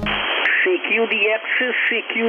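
A man's voice received over single-sideband amateur radio on the 20-metre band, played through an RS-HFIQ SDR receiver's audio. It sounds thin and narrow, over a steady hiss of band noise.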